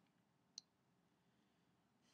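Near silence: room tone, with a single short click about half a second in.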